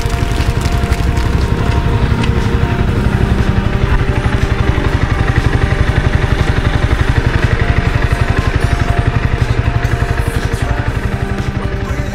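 Honda CBR250R's single-cylinder engine running at low revs, a steady rapid pulsing, as the motorcycle rolls slowly up and draws to a stop. Background music plays over it.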